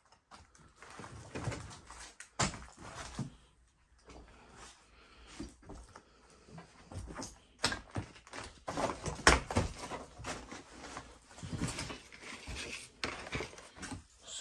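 A person moving about and handling things in a cramped, cluttered room: irregular knocks, bumps and rustles, the sharpest about two and a half seconds in and again around eight and nine seconds.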